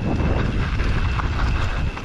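Wind buffeting a helmet-mounted camera's microphone as a Mondraker Summum downhill mountain bike rolls over loose dirt and gravel at about 20 km/h. The tyres rumble steadily and small clicks and rattles come from the bike.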